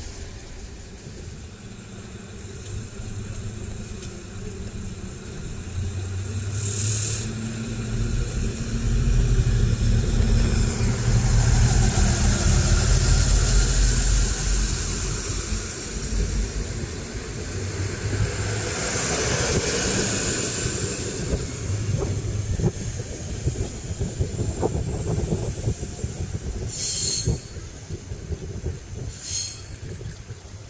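DB class 648 (Alstom Coradia LINT 41) diesel multiple unit pulling away: its diesel engines rev up to a loud rumble that peaks about halfway through. As it draws off, its wheels clatter on the rails and squeal briefly in the curve, and the sound fades, with two short high hisses near the end.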